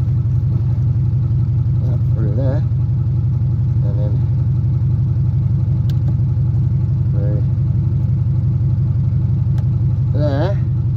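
A vehicle engine idling steadily, a constant low hum with no revving. A few short, faint voice-like sounds come and go over it.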